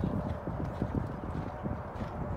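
Horse's hoofbeats cantering on sandy arena footing: a quick, steady run of dull low thuds.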